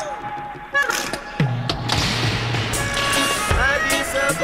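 Roots reggae song intro: a deep bass note slides in and holds, a low drum thump lands near the end, and voices start chanting over the music.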